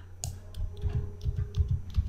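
Computer keyboard and mouse clicks: a quick, irregular run of small clicks as keys are pressed (Ctrl+D) to duplicate shapes.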